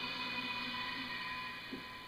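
Quiet background music: a steady ambient drone of a few held tones, with no other event.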